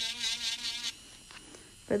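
Electric nail drill (e-file) with a cuticle prep bit buzzing as it works around the cuticle, its pitch wavering as the bit bears on the nail for about the first second, then easing to a faint whine.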